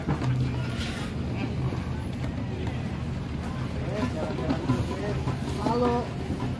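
Faint, indistinct talking from several people over a steady low rumble.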